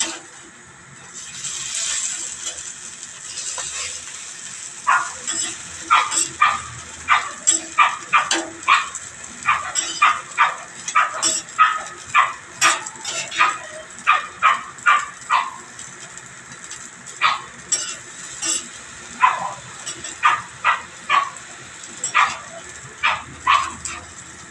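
A dog barking in quick runs of short, sharp barks, about two a second, beginning about five seconds in, with a short pause partway through.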